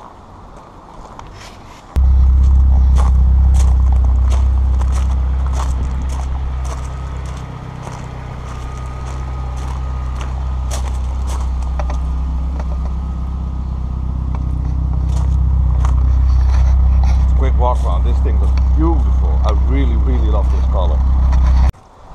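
Turbocharged Peugeot 205 Dimma engine idling steadily at the exhaust, starting abruptly about two seconds in and cutting off just before the end, a little quieter in the middle. Light crunching of footsteps on gravel runs through it.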